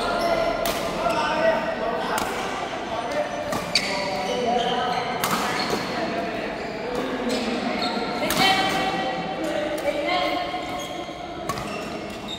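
Doubles badminton rally: sharp smacks of rackets hitting the shuttlecock about every one to two seconds, with squeaks of court shoes on the vinyl court mat between the hits.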